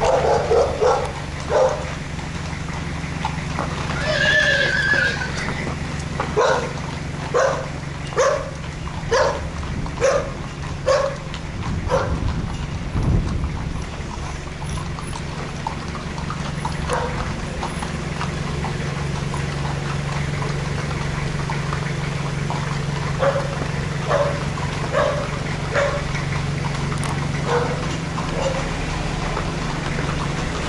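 Horses' hooves striking an asphalt street in a regular beat, with a brief horse whinny about four seconds in. A steady low engine hum runs underneath.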